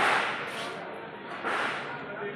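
Two short bursts of rushing noise on the microphone, about a second and a half apart.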